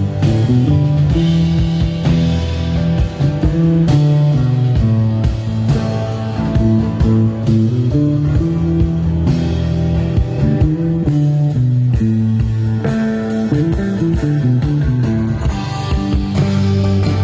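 Live rock band playing an instrumental passage: guitars over a walking bass line and a steady drum beat, recorded on a smartphone.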